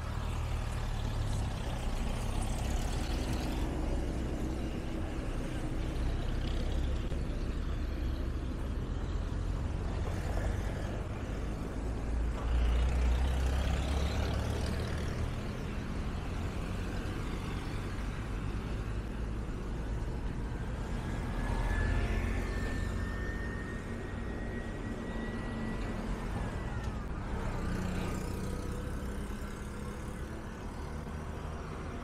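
Road traffic on a busy town road: a continuous low rumble of car and motor engines and tyres. It swells as vehicles pass about twelve seconds in and again a little past twenty seconds, and a faint high whine rises slowly and then drops away.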